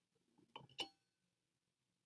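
Two faint clinks about a quarter second apart, a little under a second in, the second ringing briefly: the metal lid of a glass canister being lifted off.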